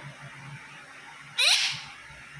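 A rose-ringed (Indian ringneck) parakeet gives one short, rising squawk about one and a half seconds in.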